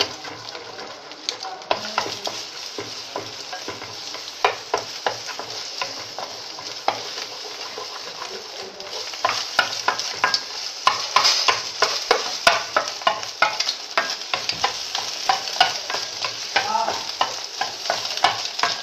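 Eggs sizzling in hot fat in a non-stick pan while a wooden spatula stirs and scrapes them into scrambled egg. Frequent clicks and scrapes of the spatula on the pan ride over a steady sizzle, and they grow busier in the second half.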